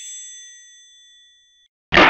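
A bright electronic chime, a ding of several clear ringing tones, fading away over about a second and a half, used as the closing sound logo of a spoof dating-site advert. Right at the end a loud noisy sound starts suddenly.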